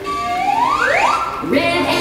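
Children's action song, with a pitched sound that slides steeply upward about a quarter second in and another upward slide starting near the end.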